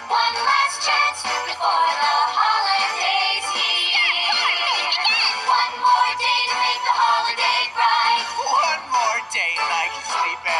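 A song continuing: voices singing a melody with marked vibrato over instrumental backing music.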